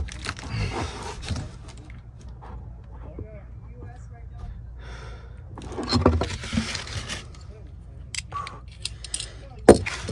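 A steel bolt and small metal fittings clinking and rattling as they are handled and tried in a mounting hole, in two spells of handling noise with scattered light clicks and one sharp click near the end.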